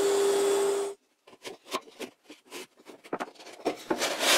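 Disc sander running with the edge of a plywood disc held against it: a steady motor hum under the hiss of sanding, which cuts off suddenly about a second in. After that, faint scattered knocks and rubs of the wooden disc being pressed into its MDF ring as it is test-fitted.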